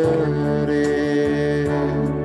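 Slow Christian worship song played on an electronic keyboard: sustained chords held over a steady low bass note, with a chord change right at the start.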